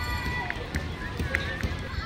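Outdoor ambience: a steady low rumble with faint distant voices and a few faint high tones.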